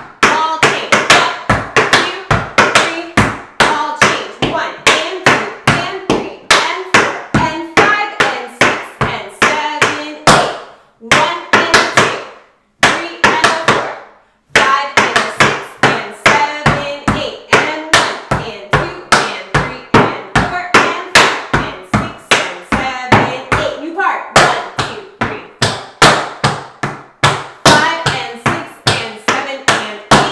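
Metal taps on tap shoes striking a wooden tap board in fast, rhythmic runs of steps from a beginner combination (stomps, toe-heel taps, paradiddles, ball changes). There are brief pauses about eleven and thirteen seconds in.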